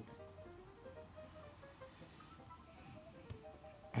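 Faint background music: a quiet melody of short notes stepping up and down.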